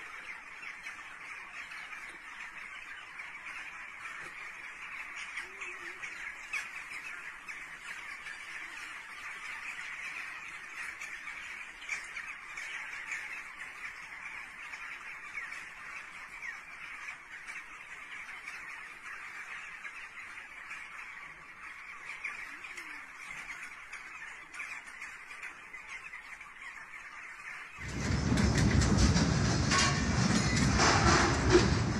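A large flock of birds calling all at once: a dense, continuous chatter of many overlapping calls, reported as strange bird behaviour ahead of an earthquake. About two seconds before the end, a much louder, rough noise suddenly cuts in.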